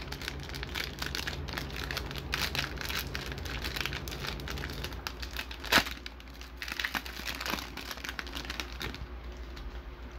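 Clear plastic wrapper of a trading-card hanger pack crinkling and crackling as it is handled and opened, with one sharper crackle about six seconds in. It quietens toward the end.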